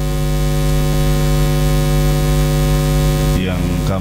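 Steady electrical hum with hiss from a public-address system, a low buzz with many evenly spaced overtones. A man's voice over the loudspeakers comes back in near the end.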